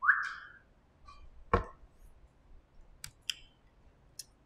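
Scattered small room sounds: a short rising squeak right at the start, a single sharp knock about one and a half seconds in, and two light clicks near the end.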